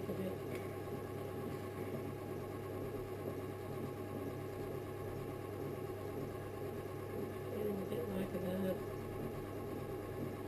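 Electric potter's wheel motor running with a steady hum while wet clay turns on the wheel head.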